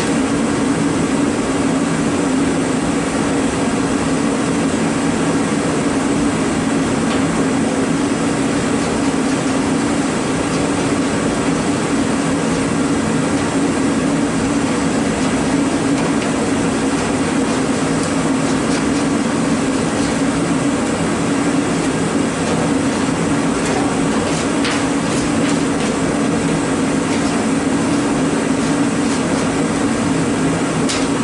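Steady machine hum, unchanging throughout, with a few faint light clicks in the last few seconds.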